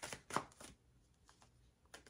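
A deck of tarot cards being hand-shuffled, with a quick run of sharp card slaps and clacks in the first half second, then a few fainter taps.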